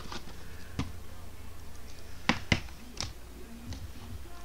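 A few sharp taps and clicks from cards, packs and boxes being handled on a tabletop. There is one about a second in, a quick pair past the middle and one more near the end, over a steady low hum.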